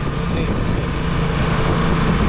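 Steady running of a vehicle engine, a continuous low hum with road and wind noise, as heard by someone riding in the vehicle.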